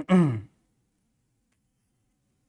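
A man's brief voiced exhalation, like a sigh, falling in pitch and lasting about half a second at the very start.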